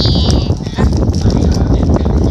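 Crinkling, rustling and scraping of a yellow mailing envelope handled right against a phone's microphone as a magazine is slid out of it. The handling comes through as a loud, low-heavy rumble with many small clicks. It opens with a brief high-pitched squeal of a voice that ends about half a second in.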